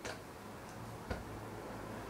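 Two light clicks as a stunt scooter's handlebars are spun and caught by hand, one right at the start and one about a second later.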